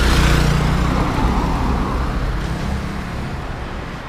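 Small street motorcycle passing close by with two riders aboard, its engine hum loudest in the first second and then slowly fading as it moves away.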